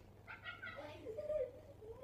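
A high-pitched voice making drawn-out calls with a wavering pitch, without clear words, ending in a falling call.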